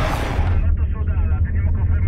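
Rushing wind noise cuts off abruptly just after the start, giving way to a thin, band-limited voice over race radio inside the team car, over a steady low drone from the car.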